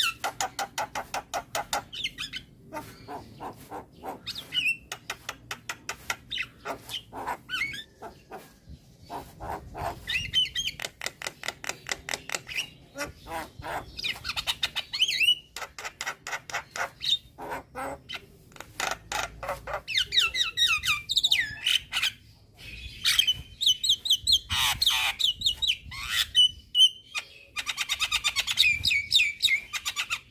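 Young Javan myna (jalak kebo) singing without pause: phrases of fast, rapidly repeated harsh notes and chatter, broken by short gaps, with a few short clear whistles near the middle and end.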